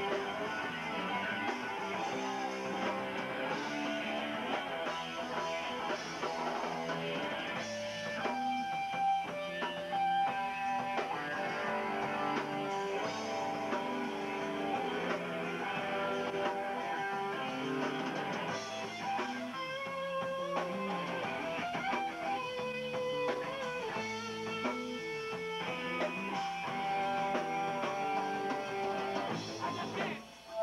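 A hardcore punk band playing live: electric guitars running through a passage of changing notes over bass and drums, with no singing.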